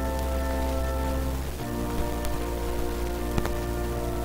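Slow instrumental music of long held chords over a low bass note, the chord changing about a second and a half in, under a steady hiss with a couple of faint clicks.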